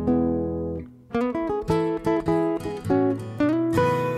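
Fingerpicked acoustic guitar. A chord rings and fades, and after a brief gap about a second in, a quick run of single picked notes follows.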